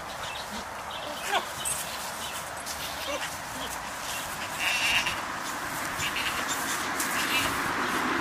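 Goats in a pen, with a short, loud call about five seconds in.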